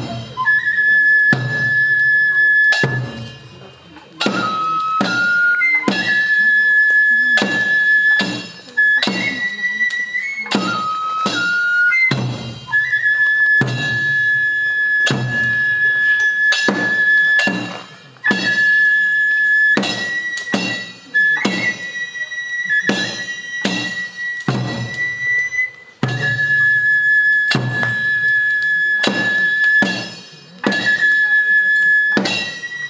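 Tsugaru kagura music: a transverse flute holds long high notes, stepping between a few pitches, over repeated strikes of a large barrel drum and a small drum. The playing breaks off briefly a few times.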